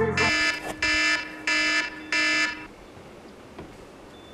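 The music cuts off and an electronic alarm beeps four times in quick succession, each beep about half a second long, then falls quiet.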